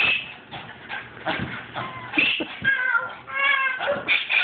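A dog jumping at a baby gate: a few short thumps early on, then several high-pitched whining cries in the second half.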